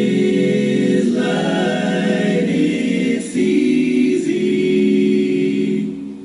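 A choir singing a hymn in long held chords that shift about a second in and again a little after three seconds. The singing fades away at the end.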